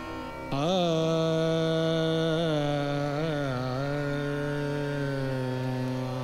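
A male Hindustani classical vocalist sings one long wordless held note, entering about half a second in and bending it through slow pitch glides and ornaments, over a steady harmonium and tanpura drone.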